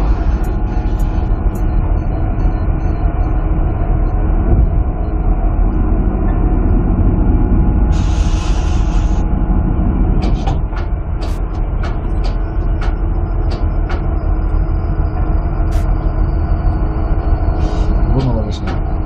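Trawler deck machinery drones loudly and steadily as the trawl net is winched up the stern ramp. A brief hiss comes about eight seconds in, and scattered knocks and clicks follow from about ten seconds on.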